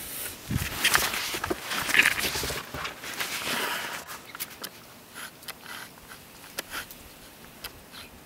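Footsteps crunching through deep snow, with rustling of a heavy jacket and the camera being handled. The crunching is densest in the first few seconds, then thins to fainter, scattered crunches.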